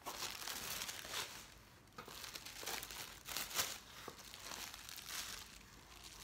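Tissue paper crinkling in a series of rustles as it is pulled open and folded back inside a cardboard box.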